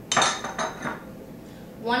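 A metal spoon knocking against a stainless steel saucepan as butter is put into the pan: one sharp, ringing clink, then two lighter taps.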